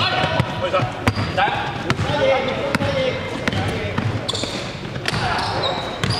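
Basketball being dribbled, a series of sharp bounces on a gym floor, with players' voices and brief high sneaker squeaks from about four seconds in, all echoing in a large sports hall.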